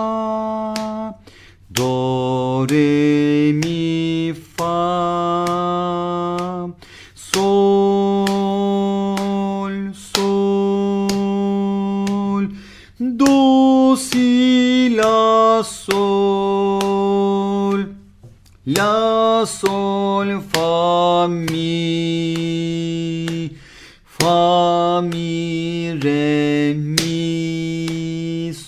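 A man singing solfège note names (do, re, mi…) of a simple melody in three-four time, holding the longer dotted notes about two seconds each, with short sharp clicks at many of the note starts.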